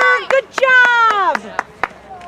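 A spectator's loud, drawn-out wordless yell in two long calls, the second falling in pitch, followed near the end by a couple of sharp knocks.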